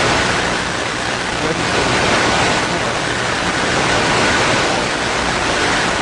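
Loud, steady hiss of static or recording noise, even from low to high pitch, with no voice or distinct events in it.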